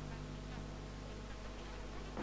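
A steady low buzzing hum under faint hiss, with no distinct movement sounds.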